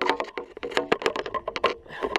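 A rapid, irregular run of sharp clicks and knocks, gear or the camera being handled close to the microphone.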